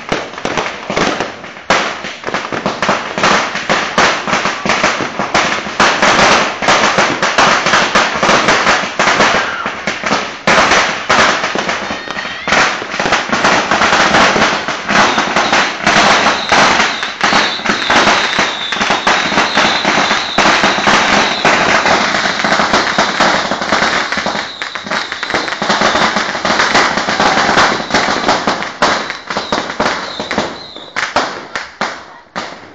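A Judas' belt, a long string of firecrackers, going off in rapid, unbroken bangs one after another. A thin high tone sounds over the crackle from about halfway on.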